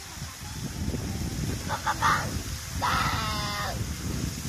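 Water jets of an illuminated fountain show rushing and splashing with a low rumble. A high-pitched voice calls out for about a second near the three-second mark.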